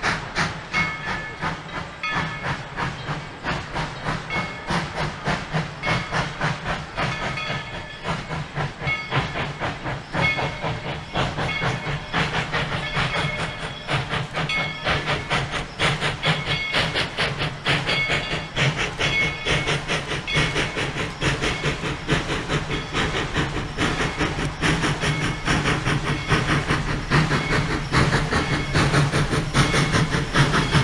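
Steam locomotive Tweetsie #190, a Baldwin 4-6-0, working hard with a steady rhythmic chuff of exhaust and steam hiss, growing louder as it approaches.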